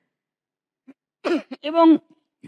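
A woman's speech through a microphone: a pause of about a second with almost nothing heard, then a short vocal sound and a single spoken word near the end.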